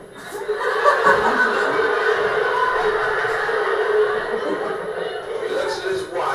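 Laughter and chuckling mixed with voices from the soundtrack of a video clip played back over speakers, sounding thin with little bass.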